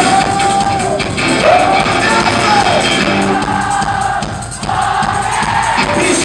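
Live rock performance: a male singer holds long sung notes that each slide down at the end, repeated several times over guitar and band, with crowd noise mixed in.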